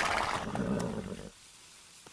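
Logo-intro sound effect: a sudden loud rushing burst that fades out over about a second, followed by a brief quiet gap.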